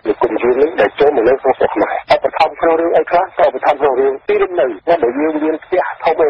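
Continuous speech in Khmer from a radio news broadcast, with the thin, narrow sound of radio audio.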